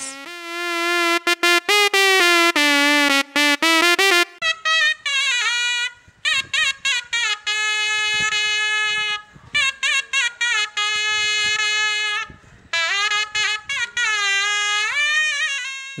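A synthesized shehnai patch, built on Reason 9's Malström synthesizer from a sawtooth oscillator with EQ and reverb, plays a short phrase for about four seconds. It is followed by a recording of a real shehnai, a double-reed Indian oboe, playing a melody with sliding, ornamented notes and brief pauses.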